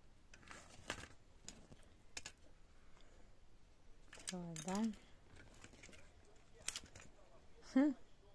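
Scattered light clicks of a broken landline telephone's plastic parts and wiring being handled, single ticks a second or so apart. A short hummed vocal sound halfway through and a louder "hm" at the very end.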